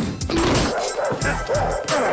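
Dogs barking repeatedly in short, quick barks, with dramatic film score underneath.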